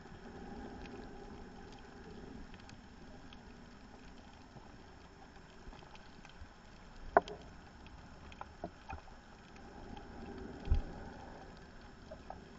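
Underwater sound picked up by a scuba diver's camera: a bubbling rumble from the diver's exhaled regulator bubbles swells near the start and again about ten seconds in. A sharp click comes about seven seconds in, followed by a few fainter ticks, and a low thump comes near eleven seconds.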